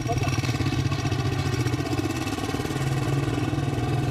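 Motorcycle engine running steadily at a constant speed.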